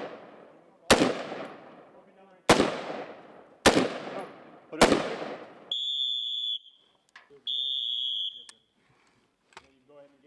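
Four single aimed shots from an M4-style carbine, a second to a second and a half apart, each trailing off in a long echo. Then two long, steady, high-pitched tones of just under a second each, like signal whistle blasts, and a few faint clicks.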